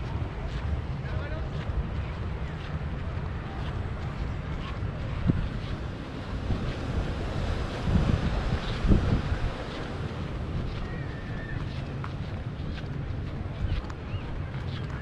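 Wind buffeting the microphone of a handheld camera: a steady low rumble with louder gusts about eight to nine seconds in.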